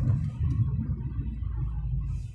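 Low rumble of a moving car heard from inside the cabin: road and engine noise while driving along a highway.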